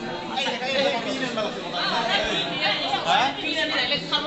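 Crowd chatter: several young people talking over one another in a room, no single voice standing out.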